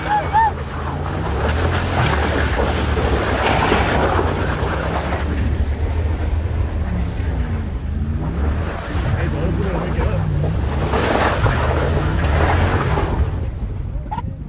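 Off-road vehicle driving over rough dirt, its engine note rising and falling again and again, with wind buffeting the microphone.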